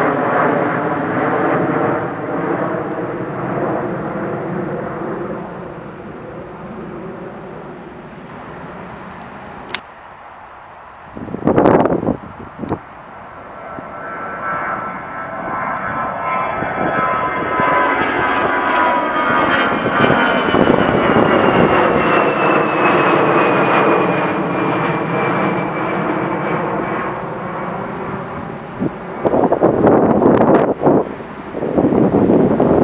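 Jet engines of climbing aircraft overhead. First a rear-engined business jet's turbofans fade away. After a short loud burst of noise about halfway, a twin-jet airliner's engines build up loud, with high whining tones that slowly fall in pitch as it passes and climbs away.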